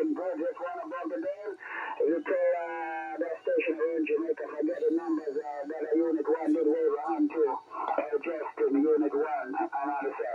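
A voice coming over single-sideband radio from a Xiegu G90 HF transceiver's speaker: another station's operator talking, with the thin, narrow sound of SSB radio audio.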